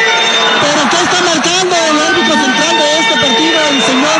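Voices talking continuously over a steady low hum.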